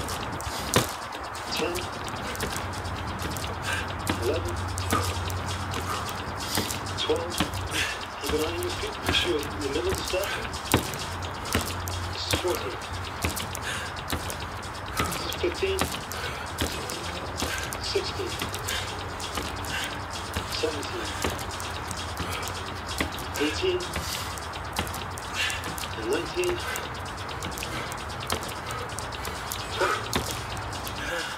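Fast-forwarded audio: an unintelligible, high-pitched garbled voice with many quick taps of bare feet stepping onto a cardboard box, over a steady low drone.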